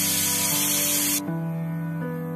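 Aluminium pressure cooker's weighted whistle releasing steam in a loud hiss that cuts off about a second in, leaving a fainter hiss: the cooker has come up to pressure and is venting. Piano music plays underneath.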